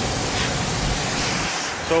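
A steady rushing noise spread evenly from low to high, with no distinct events in it. It drops off abruptly about a second and a half in, where the picture cuts, and a voice begins just before the end.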